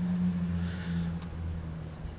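Steady low hum from the 2016 Jeep Grand Cherokee Limited, heard from inside its cabin, easing slightly near the end.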